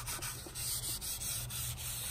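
Paper towel rubbing and wiping over a plastic engine cover in short repeated strokes, with a low steady hum underneath.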